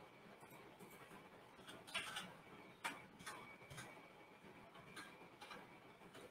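Faint, irregular clicks of a computer keyboard and mouse, a dozen or so scattered strokes, the strongest about two and three seconds in.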